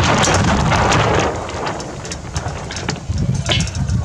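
Wind buffeting the microphone, heaviest in the first second or so, over light rustling and a few ticks from a rope halyard being threaded through deck fittings.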